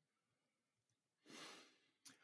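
Near silence: room tone, with one faint breath near the end.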